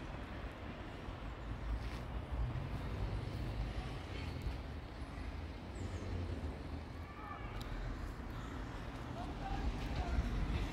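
Outdoor ambience of a quiet residential street: a steady low rumble of wind on the phone's microphone, with faint distant voices about seven seconds in.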